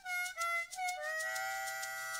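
Instrumental background music: three short notes, then a chord held from about a second in.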